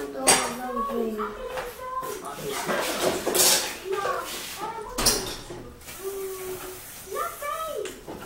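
Dishes and a pan clinking and clattering as they are handled at a kitchen sink, with a few sharp knocks, over a child's voice.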